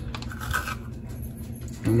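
A metal spoon scraping seeds and stringy pulp out of a halved acorn squash: quiet scraping and rustling.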